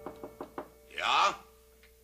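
Four quick knocks on a wooden door, then a voice answers with a short loud call about a second in.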